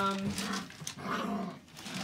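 Six-week-old Sheepadoodle puppies making small growls and rough vocal noises for about a second, just after a woman's drawn-out "um".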